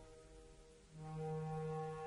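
Operatic orchestral accompaniment: about a second of near hush, then a soft, low chord held steadily in the brass.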